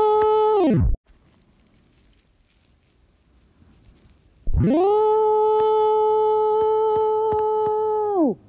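A loud, steady, buzzy held tone that bends down in pitch and cuts off about a second in, then after a few seconds of near quiet slides back up, holds steady, and bends down again at the end.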